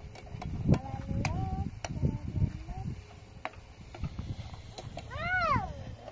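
A metal ladle clicking against a pan a few times while it stirs a sauce over a wood fire, with short high voice sounds in between. About five seconds in comes one loud high call that rises and falls.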